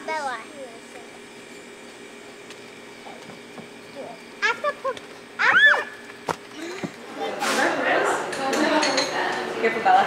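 Children's short calls and one loud high shout about halfway through while they play on a plastic playset, then, after a cut, a busy shop room with murmuring voices and light clinking of glass and jewellery.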